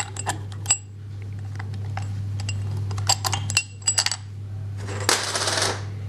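Metal parts of a Delphi DP200 rotary diesel injection pump clicking and clinking as they are fitted into the pump housing by hand, over a steady low hum. A brief rush of noise comes about five seconds in.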